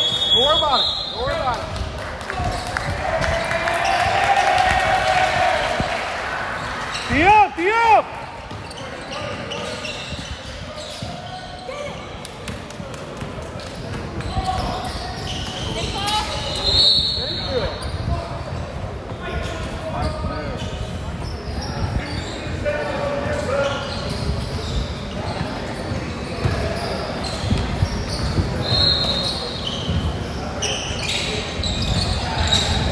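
Basketball game on a hardwood gym court: the ball bouncing, sneakers squeaking, and indistinct shouts from players and spectators echoing in the hall. Two loud high squeaks come about seven seconds in.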